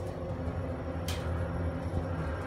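Steady low hum inside a KONE EcoSpace elevator car, with a brief high hiss about a second in.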